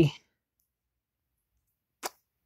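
The tail of a spoken word, then dead silence, broken by one short click near the end.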